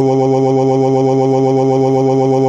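Synthetic text-to-speech male voice repeating "oh" so fast that the syllables run together into one loud, steady drone at a single unchanging pitch, the cartoon character's wail of pain.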